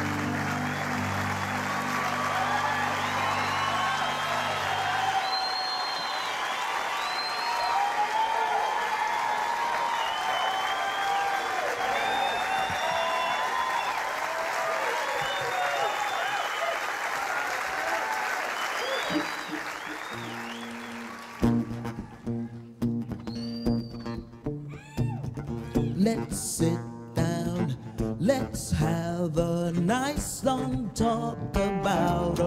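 Concert audience applauding, cheering and whistling while the last sustained keyboard chords ring out for the first few seconds. About two-thirds of the way through the applause cuts off suddenly and a solo guitar starts playing picked notes and chords.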